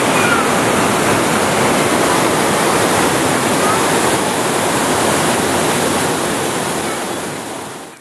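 Shallow stream water rushing over stone, a steady loud rush that fades out near the end.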